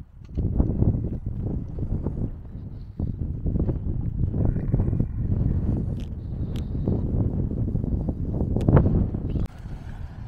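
Wind buffeting the microphone of a camera on a moving bicycle: a loud, uneven low rush with a few faint clicks. It drops away suddenly near the end.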